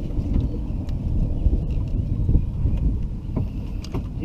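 Low, uneven rumble of wind buffeting the microphone, with a few faint clicks.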